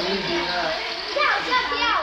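Young children's voices chattering and shouting over background talk in a room. Near the end come a few high squeals, each falling in pitch.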